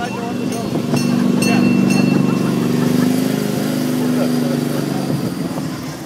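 A steady engine drone that swells over the first second or two and fades out near the end, with voices in the background.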